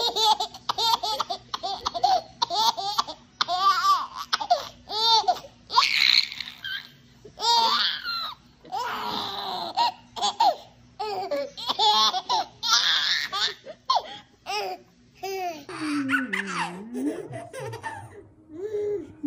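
A baby laughing in a long run of short, high-pitched bursts.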